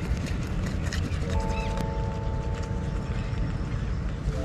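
Wind buffeting an outdoor microphone, a steady low rumble, with background music of held, sustained notes coming in about a second in.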